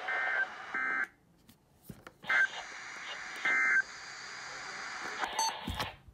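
NOAA Weather Radio SAME end-of-message data tones: four short, buzzy digital bursts over steady radio hiss, signalling the end of the weekly test. Near the end, a short beep and a thump.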